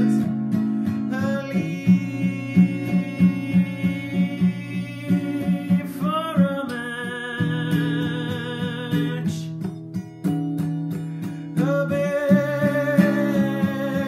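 Acoustic guitar strummed in a steady rhythm while a man sings long, wavering held notes over it, about a second in until halfway, then again near the end; between the sung lines the guitar plays alone.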